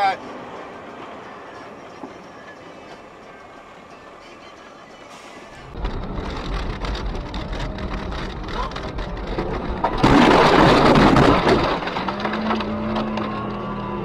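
Car driving on a snowy road, with low road and engine rumble heard from inside the cabin. About ten seconds in comes a loud rushing crash lasting over a second, as the car ploughs into a snowbank and snow blasts over the windshield.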